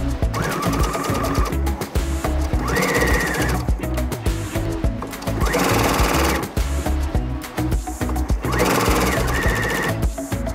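Background music with a steady beat. Around the middle, a domestic electric sewing machine runs briefly, stitching along a strip of denim.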